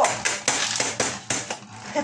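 Metal Beyblade tops clattering against a sheet-metal arena and its rim: a quick series of sharp metallic clicks and knocks, loudest at the start and thinning out over about a second and a half, as Winning Valkyrie is knocked out of the arena.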